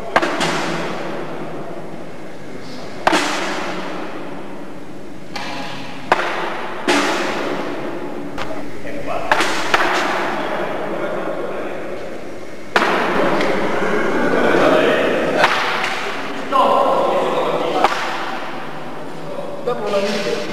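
Thrown pieces landing with sharp knocks on a sloped target board with holes, one every few seconds, each echoing in a large hall, over the steady chatter of onlookers.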